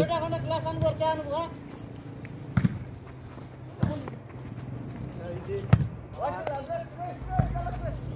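A volleyball being struck by hand three times during a rally: sharp slaps a second or two apart, with players' shouts between them.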